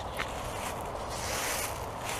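Dry fallen leaves rustling and crunching in uneven bursts, with one sharp crackle just after the start and the fullest rustle about a second and a half in.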